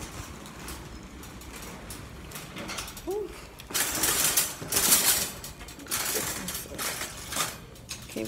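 Bursts of rustling and scraping close to a phone's microphone, from clothing and hands moving against the handheld phone, loudest in the second half.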